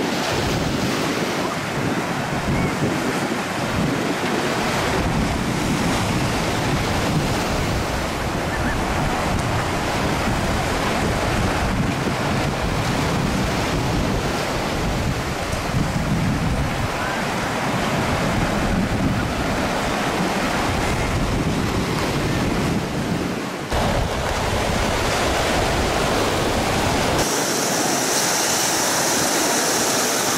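Wind buffeting the microphone over surf washing onto the shore. Near the end the sound changes abruptly to a steadier hiss without the low rumble.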